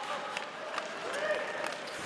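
Ice hockey arena ambience: crowd murmur with faint distant voices, and a few short clicks from play on the ice.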